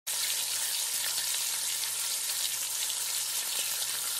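Fire sound effect: a steady crackling hiss, as of burning flames, that starts abruptly and holds at an even level, with a faint low hum beneath.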